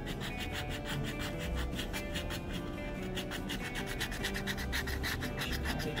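A coin-style scratcher scraping the coating off a paper lottery scratch-off ticket in quick, even, repeated strokes.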